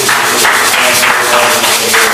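Congregation clapping in a reverberant hall, a dense irregular patter of hand claps with music and voices underneath.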